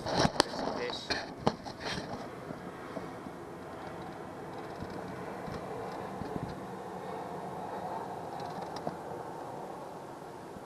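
A few sharp knocks and clatters in a small plastic boat in the first two seconds, then a steady hum with wind and water noise.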